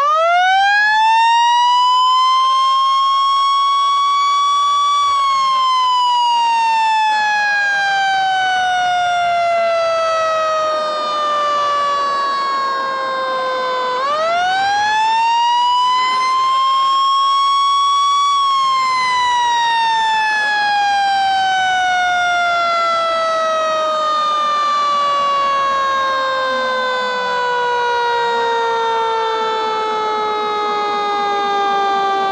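Federal Signal mechanical siren winding up to a high wail over a few seconds, then coasting slowly down in pitch. About 14 seconds in it is wound up again and coasts down once more. It is sounded to mark the minute the 1906 earthquake struck.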